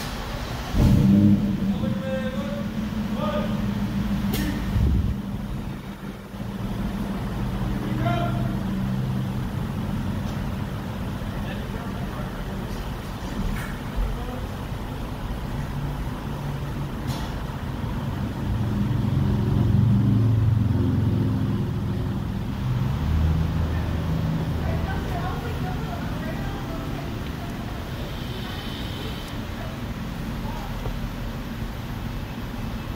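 Knocks and clicks on the windshield glass as wiper blades are fitted, heard muffled from inside the car cabin, with a loud knock about a second in and a few sharp clicks later. Muffled voices and a low steady rumble run underneath.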